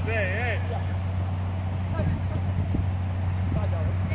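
Players shouting on a football pitch, with one raised call in the first half-second, over a steady low hum. A few faint dull knocks follow.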